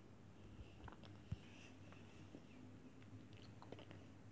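Faint chewing of a treat, with small scattered mouth clicks and one sharper click just over a second in.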